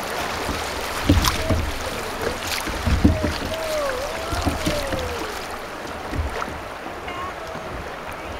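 River water rushing and splashing around a kayak's hull as it runs through a riffle, with a few low thumps and knocks. A faint, wavering, gliding tone is heard in the middle.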